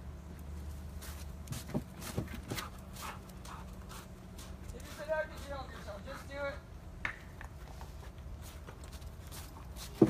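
A few scattered soft knocks and steps over a steady low hum, with a brief high-pitched voice in the middle.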